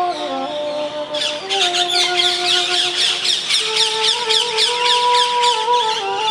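Bamboo transverse flute (bansuri) playing a slow melody of long held notes, stepping down at the start and moving up to a higher held note about halfway through. From about a second in, a dense chatter of many birds with quick falling chirps sounds over it.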